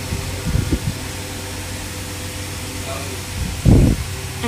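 Steady low hum of a fan or air-conditioning unit, with a few soft low thumps about half a second in and a louder low thump near the end from the phone being handled.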